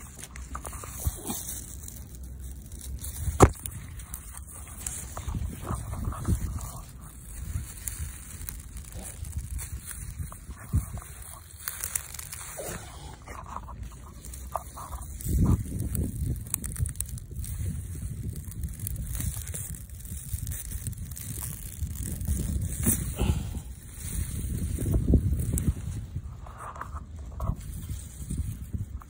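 Hands digging in loose soil and pulling up a winter radish: crackly rustling of its stiff leaves, which sound almost like plastic, with scraping of dirt and irregular low thumps.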